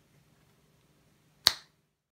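Very quiet room tone, then a single sharp click or snap about one and a half seconds in, dying away within a fraction of a second.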